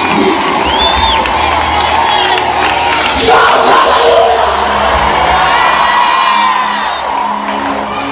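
Church congregation praying aloud and shouting praise all at once, many voices with whoops and cries rising above the mass, over music with a steady low bass. It swells about three seconds in and eases near the end.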